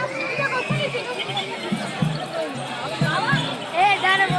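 Drumming with a steady beat, about three beats a second, under the voices of a crowd talking and calling.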